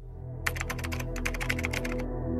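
Typing sound effect: a rapid run of key clicks, about ten a second, starting about half a second in and stopping just before the end. It plays over a low droning ambient music bed.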